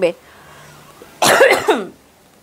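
A woman coughs once, a short, loud cough about a second in.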